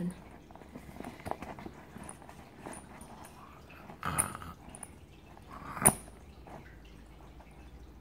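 Fingers picking and tugging at the sealed closure of a waterproof fabric bag: faint rustling and scratching with small clicks, a louder rustle about four seconds in, and one sharp snap near six seconds.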